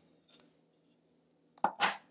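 A green plastic handheld pencil sharpener being handled: a faint click about a third of a second in as its lid is secured, then a short knock near the end as it is set down on a wooden tray.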